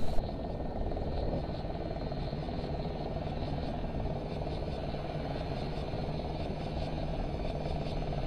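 Steady low rumbling background noise with a faint hum running under it.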